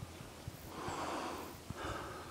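Heavy breathing of a hiker climbing uphill, close to the microphone: a long breath through the middle and another starting near the end, with faint low thumps beneath.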